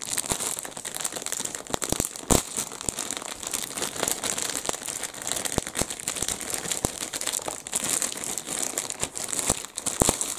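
Clear plastic kit bag crinkling and crackling as a plastic model-kit sprue is handled and drawn out of it. Sharp little clicks run throughout, with one louder click about two seconds in.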